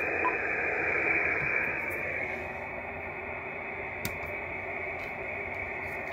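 Steady hiss of an Icom IC-7300 receiver on sideband with no signal coming in, cut off sharply above like a narrow sideband filter, easing slightly in level. A faint click about four seconds in.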